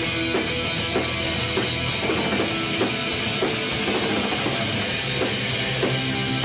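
Live rock band in full song: electric guitars, electric bass and a drum kit keeping a steady beat.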